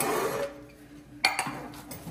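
Metal pots and pans being handled and shifted in a nested stack, with one sharp clank a little past a second in.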